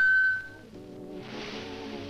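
A click and a loud, steady high beep lasting about half a second, then background music; a rushing hiss joins in about a second in.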